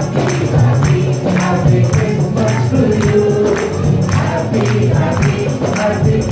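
Live gospel worship song: a man sings into a microphone over acoustic guitar and a band, with steady rhythmic percussion.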